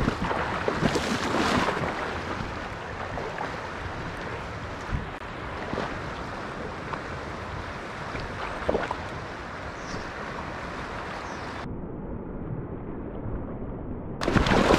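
Steady rush and lapping of river current close to the microphone, with some wind on the mic and a few faint knocks. A little under two seconds before the end the sound abruptly turns duller and thinner.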